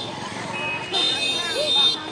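A shrill, high-pitched horn sounds once, starting about a second in and lasting about a second, over the voices of a crowded street.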